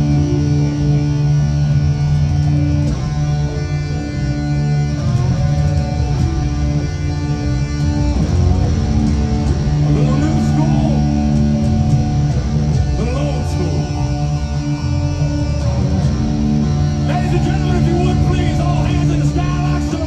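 A live rock band playing amplified electric guitar and bass with a heavy, sustained low end. From about the middle on, voices rise over the music.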